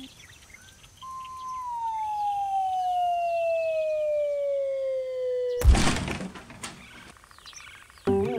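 Dog howling: one long call that falls slowly in pitch over about four and a half seconds, then breaks off into a sudden loud crash with a few clicks after it.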